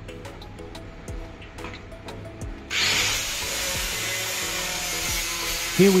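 Soft background music, then about two and a half seconds in a power tool starts abruptly and runs steadily with a loud, hissing whir.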